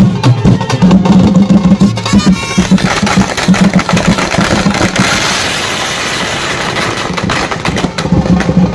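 A drum beaten in a fast, driving rhythm for street dancing. About three seconds in, a loud steady hiss of noise rises over the drumming and holds until near the end.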